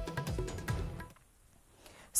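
Background music with drum beats and sustained notes, which cuts off suddenly about a second in and leaves near silence.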